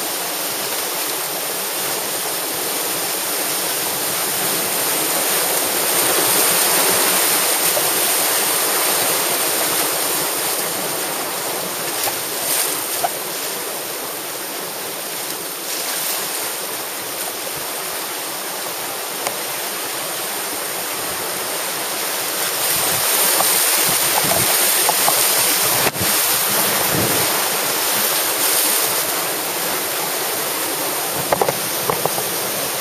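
Rushing whitewater of a small creek's rapids, heard close up from the kayak as it runs the drops. The rush swells twice, about six seconds in and again past twenty seconds, as the boat goes down through the steps.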